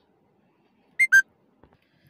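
Two short, loud whistle-like notes in quick succession about a second in, the second lower and falling in pitch.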